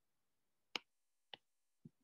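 Near silence broken by two short, sharp clicks about half a second apart, with a faint tick just before speech resumes.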